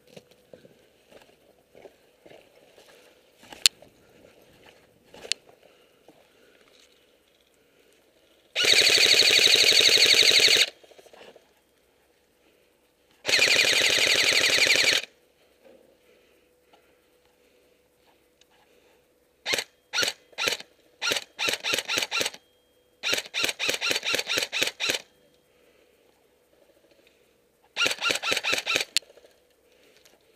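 Electric airsoft rifle (AEG) firing up close: two long full-auto bursts of about two seconds each, then a string of rapid single shots and short bursts, and a last short burst near the end. A few sharp knocks come in the first few seconds.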